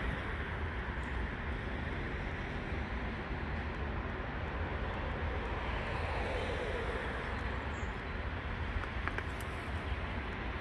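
Steady outdoor background noise: a low rumble under an even hiss, with no distinct event standing out.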